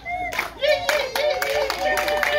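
A group of people clapping, with voices calling out over the claps in long held notes.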